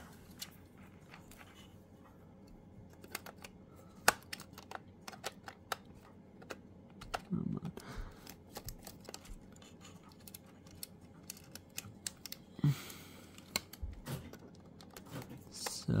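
Scattered light clicks and taps, irregular and soft, as wires are handled and fastened under the screw terminals of a Western Electric 2831 telephone's terminal board.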